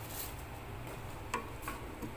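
Cumin seeds sizzling faintly in hot oil in a small steel pan, with two light ticks about a second and a half in.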